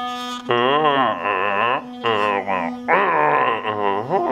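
Electric toothbrush buzzing steadily, under a loud wavering, voice-like melody that bends up and down and breaks off briefly a few times.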